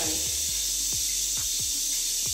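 A running shower: water spraying steadily, a constant hiss. A few short downward-gliding tones sound beneath it.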